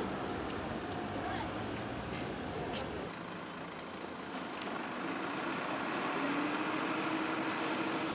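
Street traffic noise with indistinct voices; near the end a heavy vehicle's engine rises slightly in pitch, as if pulling away.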